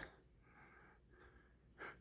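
Near silence: room tone, with a faint brief sound just before the end.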